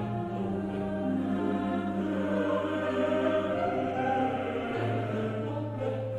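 A choir singing slow, long-held chords over a steady low bass note.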